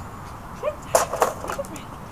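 Wire dog crate rattling: a quick run of sharp metal clatters about a second in, as a small dog goes into it.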